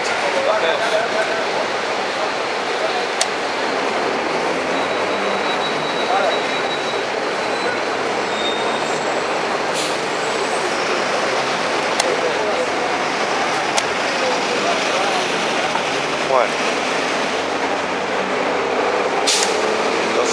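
Steady hum of city street traffic, with a few sharp clicks from the blitz chess game on the board, spaced several seconds apart.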